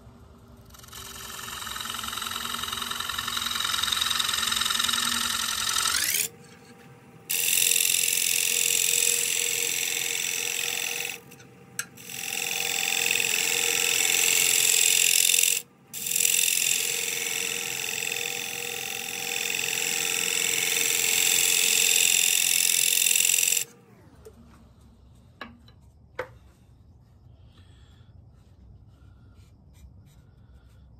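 A gouge cutting the outside of a spinning California pepper wood dish on a lathe. The cutting runs loud and steady in several passes with short pauses between them, and stops about 24 seconds in.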